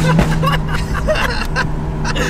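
BMW M2 Competition's S55 twin-turbo straight-six with catless downpipes and the stock muffler, heard from inside the cabin while driving: a steady, loud exhaust drone held at one pitch.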